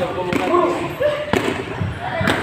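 Boxing gloves striking handheld focus mitts in a few sharp smacks, with voices talking over them.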